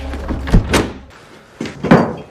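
A heavy sliding door closing on a concrete-walled room: a low rumble, then a thud about half a second in and a second, louder bang near the end.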